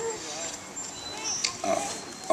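A lull in the talk with faint voices and short gliding vocal sounds.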